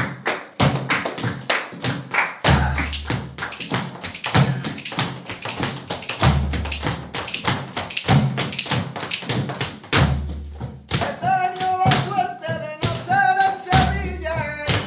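Flamenco bulerías music with a dense run of sharp rhythmic taps from dancers' footwork and palmas. A singing voice comes in about three seconds before the end.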